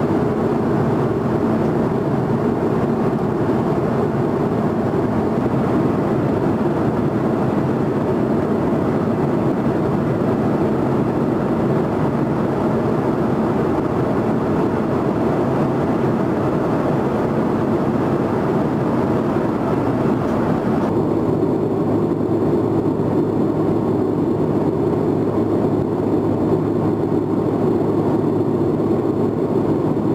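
Steady in-flight cabin noise of a CC-150T Polaris (Airbus A310-based) tanker: jet engine and airflow rumble heard from inside the aircraft. About two-thirds of the way through it turns duller as the hiss drops away.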